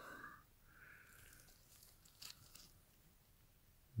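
Near silence: faint rustle of gloved hands handling a coin, with one soft click a little past two seconds in.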